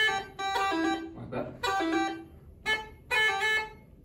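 Uilleann pipes chanter playing short phrases of a few notes each, with brief gaps between the phrases and no drones sounding. The notes are clipped and articulated, demonstrating staccato phrasing in a slide.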